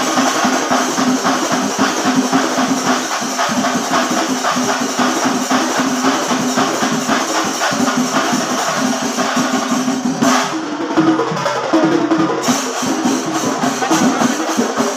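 Singari melam ensemble playing: fast, dense chenda drumming with the clash of ilathalam cymbals, under a steady pitched hum. The top of the sound drops away for about two seconds near the end, making it briefly duller.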